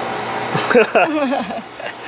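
A steady rushing noise, then voices talking and laughing from about half a second in.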